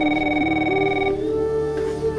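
A desk telephone ringing once: a steady electronic ring of about a second that then stops, over sustained background music.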